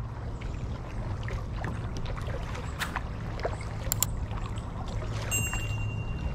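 Kayak paddling: paddle blades dipping and water trickling and dripping, with a couple of sharp knocks, over a steady low rumble.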